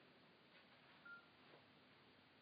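Near silence with a couple of faint taps and one short, single-pitched electronic beep about a second in: a mobile phone's keypad tone as its buttons are pressed.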